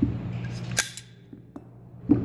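Metal rifle parts being handled: a light click, then a sharp clack a little under a second in, followed by a few faint ticks, over a low steady hum.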